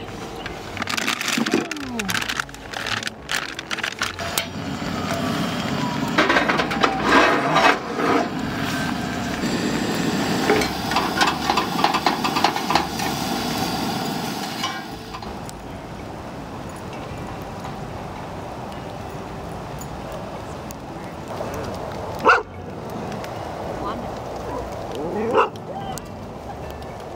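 Burger patties sizzling in a cast-iron skillet on a camp stove, with a utensil clinking and scraping against the pan. After about 15 seconds it goes quieter, and a dog yelps twice near the end.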